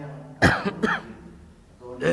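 A man coughing twice into a close microphone, two sharp coughs about half a second apart, with his hand over his mouth.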